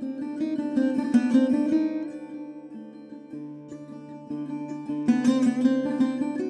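Sarod played solo: quick runs of plucked notes over a steady low drone, with a quieter, sparser stretch in the middle.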